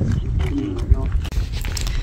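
Low rumble of wind buffeting the microphone in an open field, with faint voices talking briefly about half a second in.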